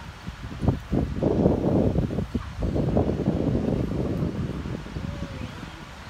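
Wind buffeting the microphone: an uneven low rush that swells in gusts from about a second in.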